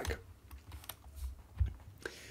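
A few faint, sharp clicks of a computer being operated to flip the on-screen chess board, over a low room hum.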